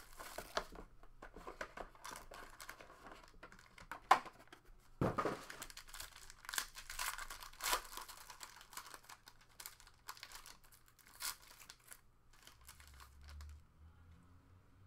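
Foil wrapper of a Panini Contenders Optic basketball card pack crinkling and tearing as it is opened by hand, in many short, sharp crackles and rustles.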